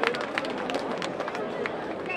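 Irregular sharp clicks or taps, several a second, over outdoor street background noise with faint voices.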